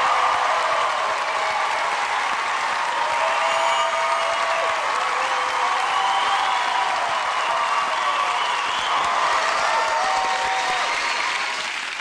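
Large theatre audience applauding at the end of a sung performance: a loud, dense, steady wash of clapping with some voices calling out over it, dying down near the end.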